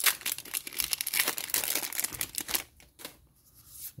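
Foil booster-pack wrapper crinkling and tearing as it is ripped open by hand, a dense crackle that stops about two and a half seconds in.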